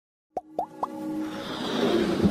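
Logo intro sound effects: three quick rising pops about a quarter second apart, then a swelling whoosh over a held musical tone that builds toward the end.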